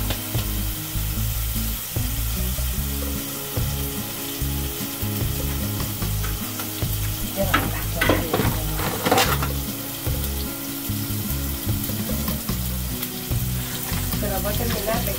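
Food frying on a gas griddle stove: a steady sizzle, with a louder, busier stretch about eight to nine seconds in.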